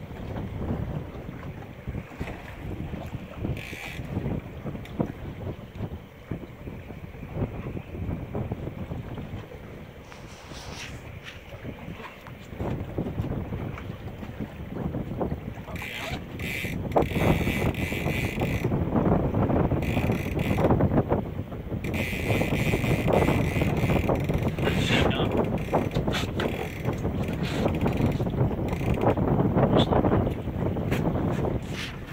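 Wind buffeting the microphone over the wash of open-sea water around a boat. It grows louder about halfway through, with stretches of harsher hiss.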